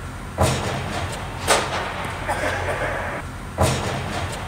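Tennis balls struck by rackets, three sharp pops, each echoing in a large indoor tennis dome.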